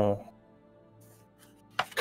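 A short pause in the conversation: a man's voice trails off at the start, then only faint steady background music until the next voice starts near the end.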